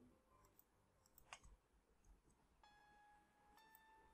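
Near silence, with a faint click about a second in and faint sustained background-music notes in the second half.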